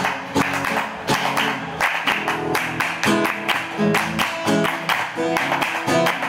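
Acoustic guitar strumming the instrumental introduction of a Latin folk song, with the audience clapping along to the beat.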